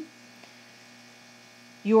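A faint, steady electrical hum in the recording, a single low tone, with a voice starting to speak just before the end.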